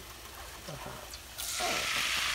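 Finely diced potatoes tipped into a pan of hot frying oil: a sudden sizzle starts about one and a half seconds in and keeps going.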